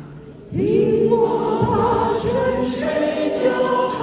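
Small vocal ensemble singing long, held notes in harmony; the voices come in loudly about half a second in.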